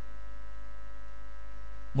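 Steady electrical mains hum, with fainter steady tones above it.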